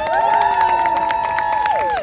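Several voices raising one long held cheer at the end of a brass band number. The cheer rises at the start, holds, and drops away near the end, with scattered clapping throughout.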